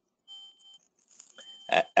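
A pause in speech: a faint, steady high-pitched tone lasting about half a second, then a man's speaking voice starts again near the end.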